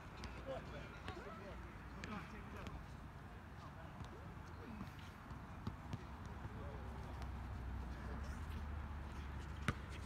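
Outdoor basketball court ambience: faint voices of players and scattered short knocks of a basketball bouncing on the court and of footsteps, with one sharper bounce near the end.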